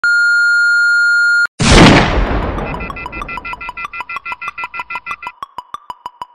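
Electronic intro sound effects: a steady high beep for about a second and a half that cuts off, then a loud crash that dies away over a couple of seconds. Rapid electronic ticks, about six a second, take over and carry on into synth music.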